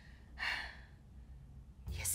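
A single short breathy sigh about half a second in, over quiet room tone.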